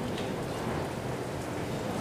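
Steady background hiss with no clear events, in a pause between speech.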